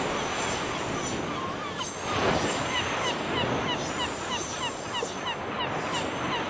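A steady rushing noise with a fast run of short falling chirps, about three or four a second, starting about two seconds in.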